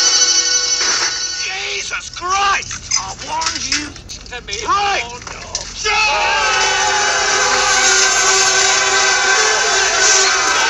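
Film soundtrack: a few short, pitch-bending cries, then about six seconds in a group of men yelling a battle cry together over music as they charge.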